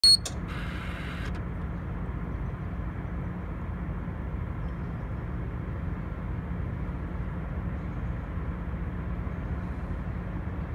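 A loader's instrument panel gives a short, sharp warning beep as the key is switched on. A steady low rumble follows while the panel counts down the diesel glow-plug preheat; the engine has not yet been cranked.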